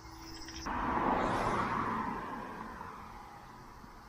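A car passing on the road close by, its tyre and engine noise swelling about a second in and fading away.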